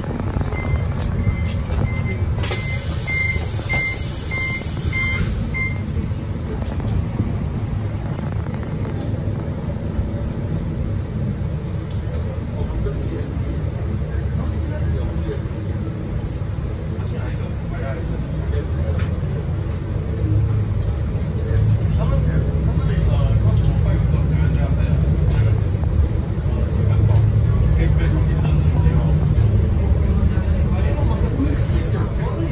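Door-warning beeps of a MAN NL323F A22 city bus, about two a second for the first few seconds, with a hiss of compressed air as the doors close. The bus then pulls away and its diesel engine runs steadily under load, growing louder as it accelerates near the end.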